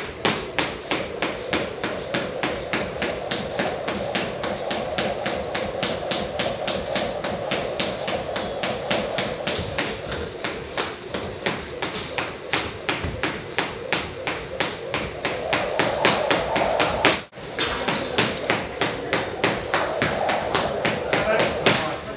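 Rapid, evenly spaced punches landing in boxing training, about four or five a second, kept up without a break, with a brief cut about three quarters of the way through.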